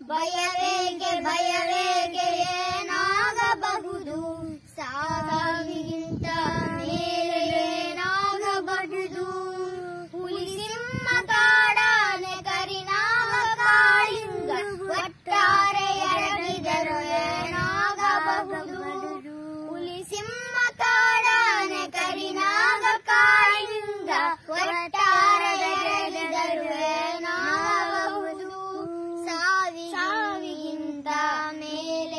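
A child singing a melodic song in sustained, flowing phrases with short breaths between them.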